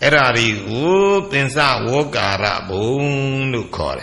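An elderly Buddhist monk's voice intoning a text in a slow chant, each syllable drawn out with gliding pitch, in several phrases with short breaks between them.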